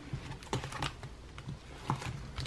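A few light clicks and taps of clear plastic cash-envelope pockets being handled and flipped in a ring binder, the sharpest near the end.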